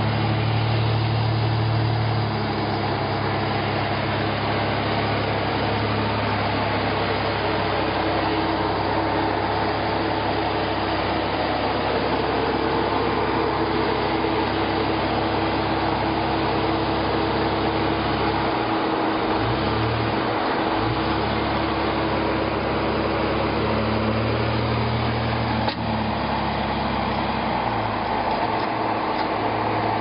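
Engine of a Jeep Wrangler JK Unlimited running at low, crawling speed as the Jeep climbs over rock. The low engine hum is steady, wavers and dips about two-thirds of the way through, then swells again.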